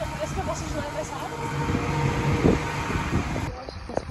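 Low engine rumble aboard a vehicle ferry with indistinct voices in the background; about three and a half seconds in the sound changes abruptly to quieter, sparse outdoor sound.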